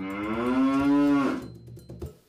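A cow mooing: one long, low call with a slight rise at the start, fading out about a second and a half in.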